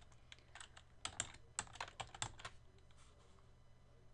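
Typing on a computer keyboard: a quick run of keystrokes for the first two and a half seconds, then it stops.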